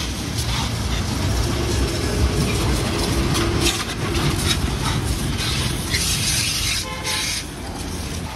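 High-pressure washer running steadily, its pump giving a low rumble under the hiss of the water jet spattering on the motorcycle's body panels.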